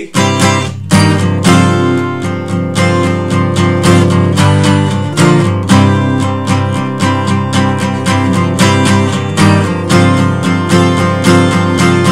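Capoed Taylor 214ce steel-string acoustic guitar strummed continuously in brisk, even strokes, moving through the chord changes (A, C, D) that lead into the solo.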